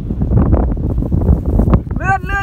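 Wind buffeting the microphone: a loud, gusty low rumble that rises and falls unevenly.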